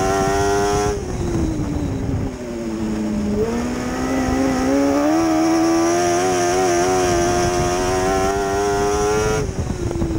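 Mod Lite dirt-track race car's engine heard from inside the cockpit. It is held at high revs, and about a second in the driver lifts off the throttle, so the pitch falls for a couple of seconds. It then climbs back to a steady high pitch under power and drops again near the end.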